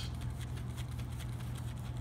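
Poker chips shifting and clicking faintly against the cardboard dividers of a loose-fitting Paulson chip box as a hand wiggles the stacks, over a steady low hum.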